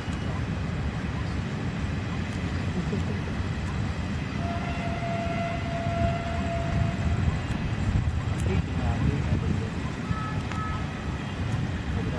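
Steady low rumble of a long train of high-capacity parcel vans rolling past behind a WAG-5HA electric locomotive. A single held tone sounds for about two and a half seconds midway, and a shorter, higher pair of tones comes near the end.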